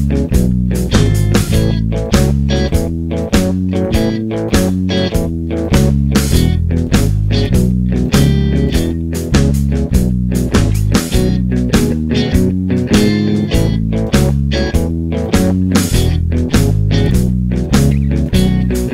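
Electric bass playing a beginner's blues line in E in steady quarter notes: up the major-scale pattern E, G sharp, B, C sharp to the octave E and back down, with the same pattern moved to other strings for the chord changes. It plays over a backing rhythm track with a regular sharp beat.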